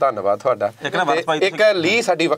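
A person's voice running on without a break, its pitch sliding up and down in long glides. There are no clear words, and nothing but the voice is heard.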